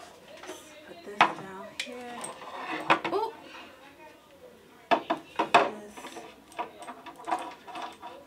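Small bottles and ceramic decor pieces being picked up and set down on a shelf: a string of sharp knocks and clinks, with a quick cluster of the loudest ones about five seconds in.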